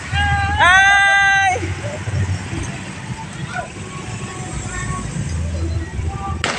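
A vehicle horn honks about half a second in, a short tap then a held note of about a second, over the low running of motorcycle and car engines moving slowly past.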